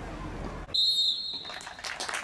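A referee's whistle blown once, about a second in: a single high, shrill blast of under a second, with a brief warble at its start.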